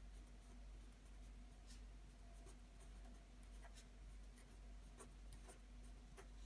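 Felt-tip pen writing on paper: faint, scattered scratches and ticks of the pen tip as block letters are drawn, over a low steady hum.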